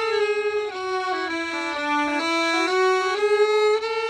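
Two violins bowing slow, sustained notes together in a finger exercise, the melody stepping down a few notes and then back up.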